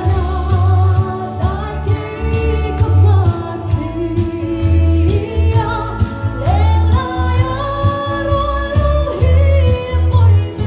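A woman singing live into a microphone through a PA, holding long notes and sliding up into several of them. A musical accompaniment with a heavy, pulsing bass plays under her voice.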